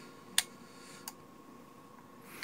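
Two clicks from the relay inside a repaired Yucostek USS-111S electronic touch switch as its touch buttons are pressed: a sharp one about half a second in and a fainter one about a second in. The relay pulling in is the sign that the switch works again.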